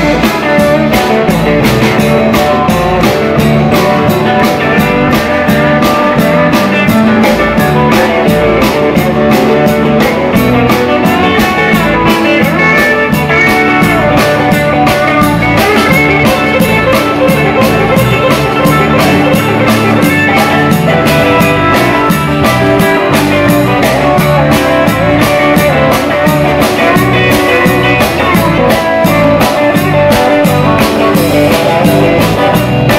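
Live country-rock band playing loud, with electric guitar, acoustic guitar and drum kit; the guitars carry an instrumental stretch with no vocal line.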